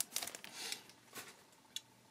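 Foil wrapper of a Yu-Gi-Oh! booster pack crinkling and tearing as it is opened, dying away after about the first second, with one light tick of card handling later.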